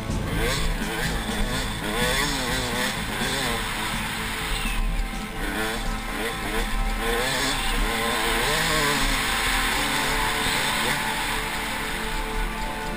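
A KTM 200 XC-W's single-cylinder two-stroke engine at racing speed, its pitch rising and falling again and again as the throttle is worked over the rough dirt track, heard from a helmet camera over a steady rush of noise.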